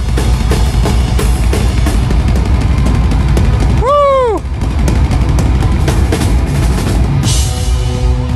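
Drum solo on a full rock kit: fast double bass drum kicks under rapid snare and tom strokes, with a crash cymbal near the end. About halfway through, a short shouted "oh" rises and falls over the drums.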